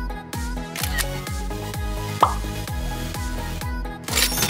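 Background electronic music with a steady kick-drum beat. A single sharp click about two seconds in is the loudest sound.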